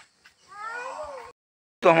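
A single meow-like call, under a second long, rising then falling in pitch. It cuts off abruptly into a moment of dead silence.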